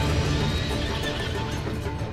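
A horse whinnying over dramatic background music.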